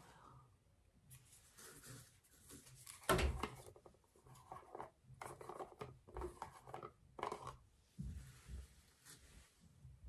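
Faint handling noises of a plastic cosmetic powder jar being worked open by hand: light rubbing and scraping with scattered small clicks, and one louder knock about three seconds in.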